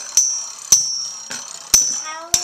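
Two Beyblade Metal Fusion spinning tops clashing in a plastic stadium: a sharp metallic clack about every half second, each with a brief high ring.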